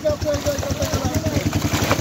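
A small engine running steadily at idle, with a rapid low throb.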